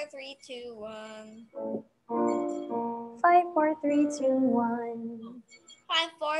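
A singing voice doing a descending five-note vocal exercise sung to the count "five, four, three, two, one", the held notes stepping down in pitch.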